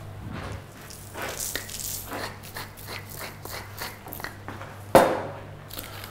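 A run of light, irregular crackling clicks and rasps from a wooden pepper mill being handled and ground, then a single sharp knock about five seconds in, over a low steady hum.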